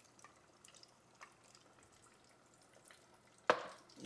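Hot frying oil crackling faintly with a few scattered small pops, then a sudden loud sizzle about three and a half seconds in, dying away within half a second, as a breaded quail breast goes into the deep fryer.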